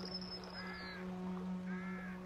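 Two crow caws, about a second apart, over a steady low held note from the film's music score.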